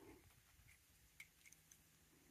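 Near silence with a few faint, short metal clicks as a threaded steel pipe end cap with a bolt firing pin is handled against the pipe.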